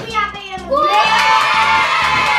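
Children shouting and cheering together, suddenly loud from under a second in, celebrating a water bottle flipped to land upright. Background music with a steady beat runs underneath.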